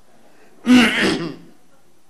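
A man clearing his throat once, a loud, rough burst lasting under a second about two-thirds of a second in.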